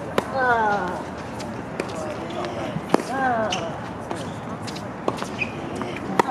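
Tennis rally: rackets strike the ball about every one to one and a half seconds, with the near-court strokes loud and the far-court strokes fainter. Each of the two loud strokes is followed by a short, falling-pitch grunt or shout from the hitter.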